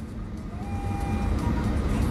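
Low, steady car-cabin rumble of engine and road noise, growing slightly louder toward the end, with a faint steady high tone for about a second midway.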